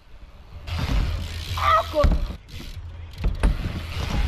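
Wind rumbling and buffeting on an action camera's microphone, with a short laugh partway through and a few sharp knocks in the second half.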